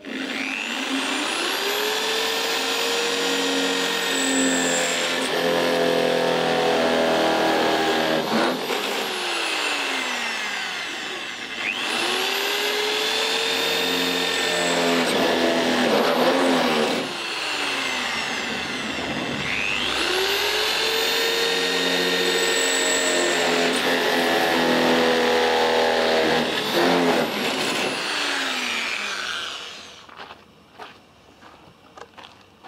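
A power drill boring a series of holes through a van's steel side panel, marking out a window opening. It runs three times for about eight seconds each: the motor whine rises as the trigger is squeezed, holds under load, then falls away when it is released.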